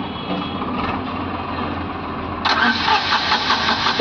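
Tata Nano's small two-cylinder petrol engine being cranked by its starter motor without catching. About two and a half seconds in the cranking turns louder and harsher. The no-start is traced to no supply reaching the injectors.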